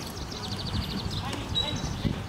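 Hoofbeats of a pair of carriage horses moving at pace, with a quick, even high ticking over the first second.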